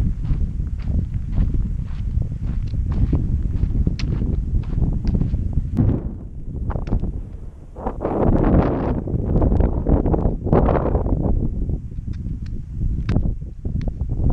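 A hiker's footsteps and trekking-pole taps on a dry, rocky dirt trail, a rapid run of short crunches and clicks over a steady low rumble, with two louder rushing swells a little past the middle.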